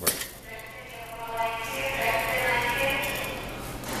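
Seed weigh-filler's vibratory feeder pan humming steadily while hybrid vegetable seeds stream into a stainless steel weigh bucket, after a sharp click as the cycle starts. The seed flow swells about the middle and eases near the end, the bulk feed giving way to the slower dribble feed.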